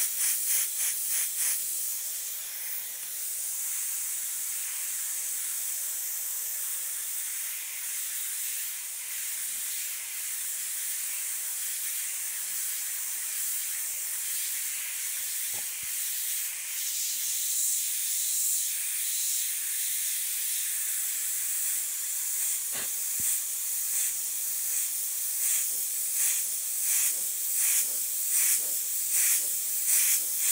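Iwata HP-CS Eclipse airbrush spraying: a steady high hiss of compressed air and paint, breaking into quick on-off pulses at the start and over the last few seconds. Two faint ticks fall in the middle.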